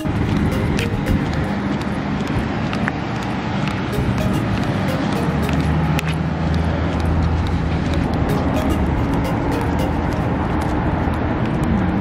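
Road traffic noise by a roadside, steady throughout and swelling in the middle as a vehicle goes by, with background music over it.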